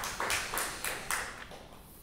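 Small audience applauding, with claps at about four a second that grow fainter and die away near the end.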